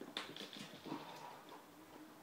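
Quiet small noises from a young pet animal: a few light clicks or taps in the first half-second, then a short pitched squeak about a second in.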